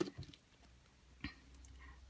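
Quiet handling of a painted cardstock butterfly die cut as it is lifted off the work mat: a few faint ticks and one sharp click about a second in, over a low faint hum.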